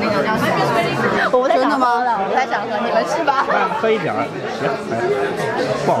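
Several people talking at once: overlapping crowd chatter with nearby voices, and no other sound standing out.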